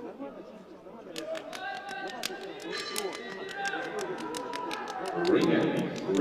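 Men's voices talking in a large arena hall, overlapping, with scattered sharp clicks throughout. The voices get louder about five seconds in.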